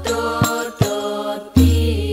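Al-Banjari sholawat music: a solo voice sings a drawn-out, melismatic melody over rebana frame drums. There are a few sharp drum strikes, and a deep drum booms beneath them.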